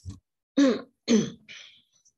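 A person's short vocal outburst: two loud, brief voiced bursts about half a second apart, each falling in pitch, trailing off into a breathy outbreath.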